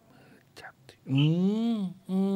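A voice making a drawn-out wordless vocal sound, its pitch rising then falling, after a faint breathy whisper-like sound and a small click.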